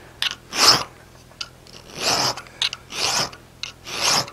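Small round chainsaw file cutting a notch into a wrought-iron bar held in a vise: several separate file strokes with short pauses between them.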